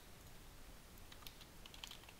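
Faint computer keyboard typing: a few quick keystrokes, mostly in the second half, as a word is typed into a code editor.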